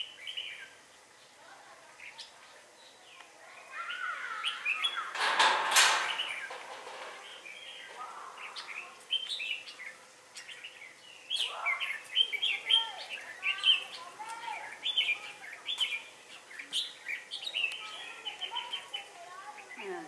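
Red-whiskered bulbuls calling back and forth, the territorial duel song of a caged decoy bird that draws a wild one to the trap cage. Short sweeping chirps come thick and fast through the second half, with one louder, harsher call about five seconds in.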